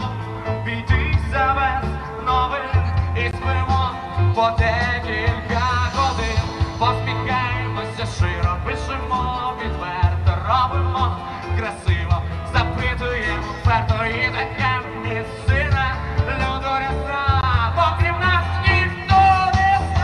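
Live rock band playing through the stage sound system, a singer's voice over guitar and a steady bass line.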